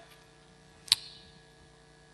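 Quiet room tone with a steady electrical mains hum, broken by a single sharp click about a second in.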